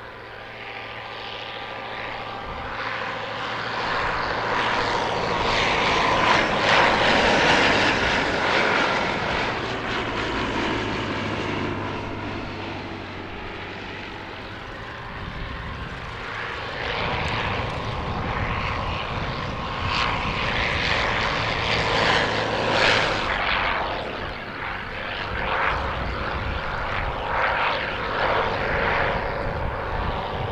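Vintage biplane's propeller engine droning in flight. It grows louder over the first several seconds, eases off around the middle, then swells again as the plane comes closer.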